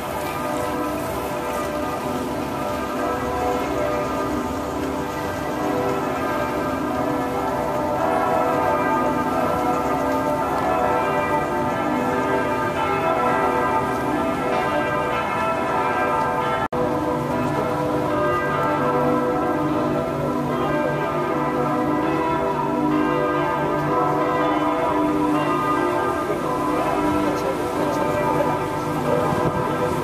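Church bells pealing, many overlapping ringing tones sounding continuously, with a brief break about halfway through.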